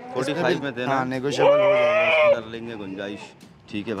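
Kota goat bleating: one drawn-out, wavering bleat lasting about a second, starting about one and a half seconds in.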